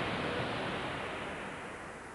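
A soft rushing noise, a sound-design whoosh with no tone or rhythm in it, fading steadily away.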